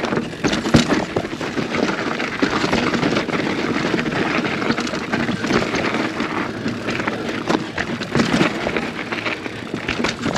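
Polygon Siskiu T8 full-suspension mountain bike descending a loose, rocky trail: tyres crunching over gravel and stones, with frequent knocks and rattles from the bike as it hits rocks.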